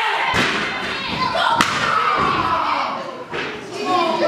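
Two heavy impacts in a wrestling ring, about a second apart, as wrestlers hit the canvas or each other. Voices shout over them.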